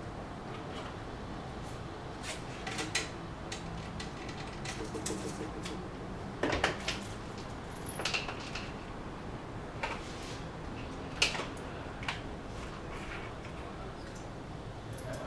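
Scattered short clicks and knocks of small hardware being handled on a table, the loudest about six and a half and eleven seconds in.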